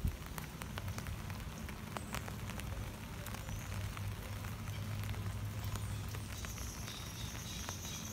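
Light rain pattering on tree foliage: a steady soft patter with many small scattered drips.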